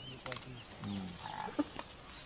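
A lion growling in short, low, evenly repeated pulses, about four a second, with a few sharp snaps of brush and a brief bird chirp.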